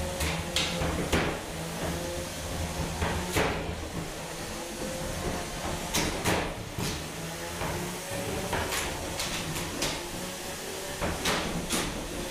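Combat robots hitting each other: about a dozen sharp hits, some in quick pairs, as an egg-beater drum spinner's teeth strike a big-wheeled robot's wheels, over a steady low motor hum.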